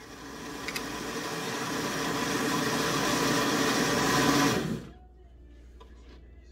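Kitchen-Art countertop blender running, blending chopped vegetables into a green smoothie; it grows steadily louder for about four seconds, then stops suddenly near the end.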